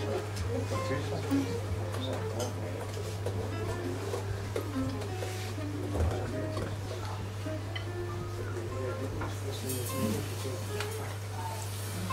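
Jazz guitar being noodled: scattered single notes picked loosely, not yet a tune, over a steady low hum, with murmured voices in the room.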